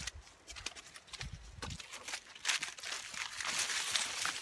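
Footsteps crunching and rustling through dry leaves and brush, a run of irregular crackles that grows denser and louder about two and a half seconds in, with a brief low rumble about a second in.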